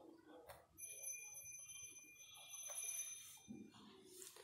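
Faint squeak of a felt-tip marker drawing on a whiteboard: thin high tones held for about two and a half seconds, fading out shortly before the end.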